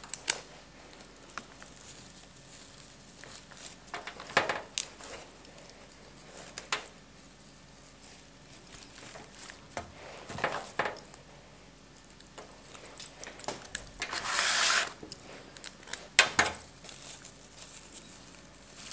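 Hands working sedum stems into a flower arrangement: scattered small clicks and rustles as stems are trimmed and pushed in, with a longer rustle about fourteen seconds in.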